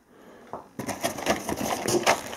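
Small firecracker packets being taken out of a cardboard box and handled: a quick run of light clicks and rustles that starts about half a second in.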